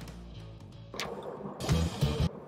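Background guitar music that cuts off about a second in, followed by a sharp click and a noisy stretch of handling or room sound with two louder bumps near the end.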